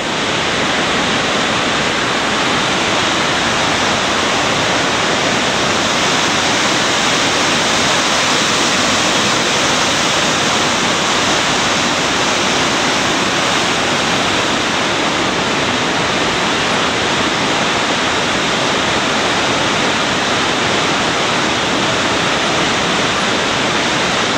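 Whitewater river rapids rushing over boulders, a loud, steady rush of water.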